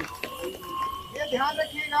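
People talking, with a thin steady high-pitched tone running underneath.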